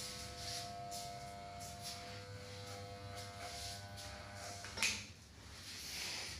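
Electric hair clippers buzzing steadily, then a sharp click a little under five seconds in as they are switched off and the buzz stops.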